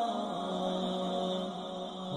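A solo voice chanting in long, held notes that slide slowly in pitch, dropping a step just after the start and rising again near the end.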